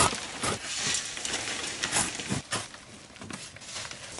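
Shovels scooping dry, stony clay and throwing it against a standing wire-mesh sieve screen, heard as a run of irregular scraping, pouring strokes about every half second.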